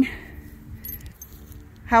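Faint metallic jingling of a pony's halter hardware, the brass lead-rope snap and buckles, about a second in.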